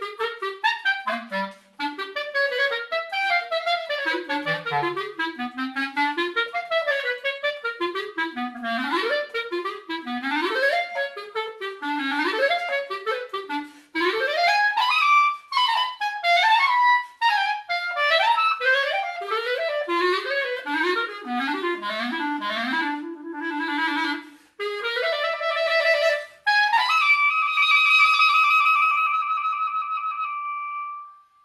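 Solo clarinet playing a fast, leaping melodic line in quick runs, broken by a few brief pauses, then settling on a long held high note near the end.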